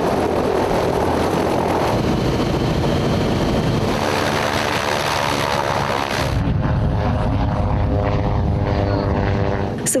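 Propeller aircraft engine running loud and steady, at first mixed with a heavy rush of propeller wash and wind. About six seconds in this gives way to a steadier pitched engine drone, typical of the An-2 biplane's radial engine.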